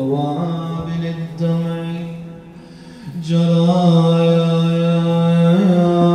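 A man chanting an Arabic Muharram lament unaccompanied, holding long drawn-out notes. The voice fades out for a breath about two seconds in and comes back strongly a little after three seconds.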